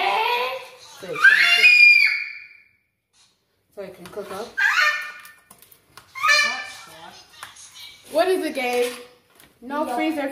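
A young child's voice in several bursts of high-pitched calls and babble, with no clear words. The sound cuts out to dead silence for under a second about three seconds in.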